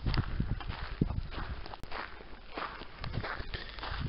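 Footsteps of a person walking on a gravel path, a run of irregular crunching steps.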